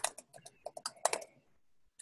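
Typing on a computer keyboard: a quick run of about ten keystrokes that stops about a second and a half in.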